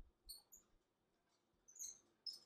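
Near silence with a few faint, short clicks from a computer mouse as the code editor is worked.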